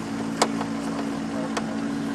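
Racing harness belt hardware clicking as the straps are fastened: one sharp click about half a second in and a couple of fainter ones later, over a steady low mechanical hum.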